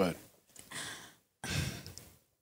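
A person's audible breaths: a short breath in, then a sigh out, with no words.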